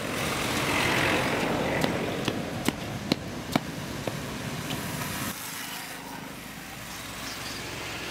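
Road traffic, with motorbikes and cars passing on the road, loudest in the first couple of seconds and quieter in the second half, with a few sharp ticks in between.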